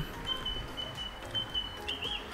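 A bird's thin, high whistled call, held for over a second with small breaks and a slight rise near the end, over quiet outdoor background noise.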